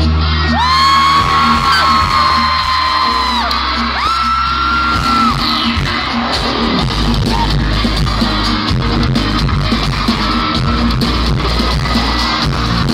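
Live K-pop pop music played loud through a concert hall's sound system, with singing and crowd yells over it. Two long high-pitched screams ring out over the music in the first five seconds; the first lasts about three seconds and the second about a second.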